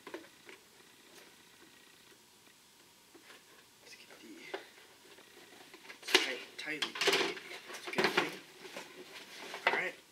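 Scissors slitting the packing tape on a cardboard box, faint at first, then the box's cardboard lid pulled open with scraping and a few sharp knocks in the second half.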